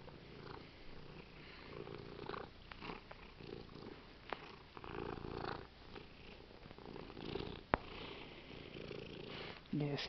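A tabby cat purring close to the microphone, a low rumble that swells and fades in rough pulses, with one sharp click about three-quarters of the way through.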